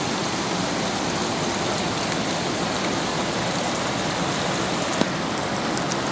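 Hot spring water welling up from under stones and running over rocks in a shallow stream: a steady, even rush of water.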